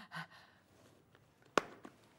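The last breathy pulse of a woman's laugh, then quiet, broken about one and a half seconds in by a sharp click and a fainter one just after, as a strand of stone beads is handled.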